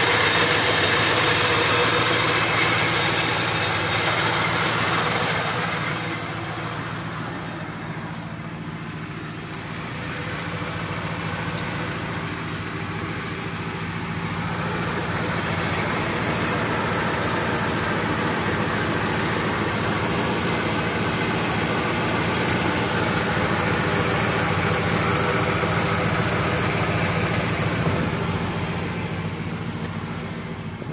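Porsche 928S 4.7-litre V8 idling steadily, heard from beneath the car. It grows fainter about six seconds in and comes back up a few seconds later.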